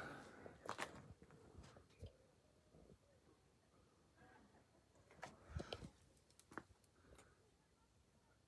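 Near silence with a few faint clicks and rustles, about a second in and again between about five and a half and seven seconds in. The ATAS-120 antenna's tuning motor makes no sound: after the tune command, it is doing nothing.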